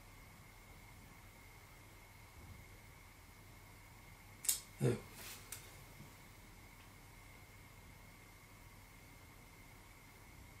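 Quiet room tone with a faint, steady high-pitched whine; about four and a half seconds in, a quick cluster of four clicks and taps lasting about a second, from handling a small Raspberry Pi touchscreen with a stylus.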